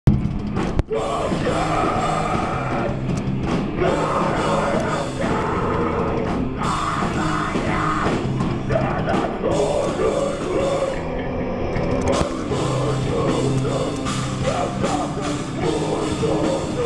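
Live rock band playing loudly: drum kit, electric bass, electric guitar and keyboards, with sung vocals from the frontman. The sound is continuous and dense, with a brief dip under a second in.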